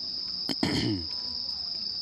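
Crickets chirping in a steady, high-pitched chorus, with a sharp click about half a second in.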